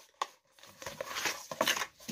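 Paperboard retail box and paper insert being handled: a short click, then rustling and crinkling with a few sharper knocks.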